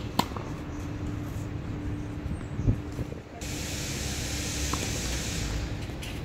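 A tennis ball struck by a racket just after the start, a dull thump a little before the middle, then a steady hiss for about two seconds in the second half.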